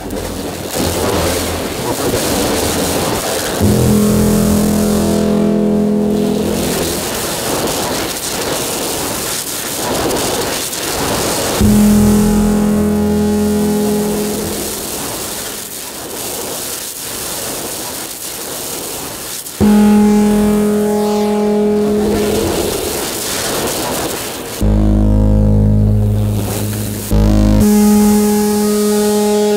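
Electronic sound from a light-sensor-controlled installation, generated in Renoise and the MicroTonic synth as hands pass over the sensors. Hissing, noisy textures alternate with steady droning tones that cut in abruptly several times.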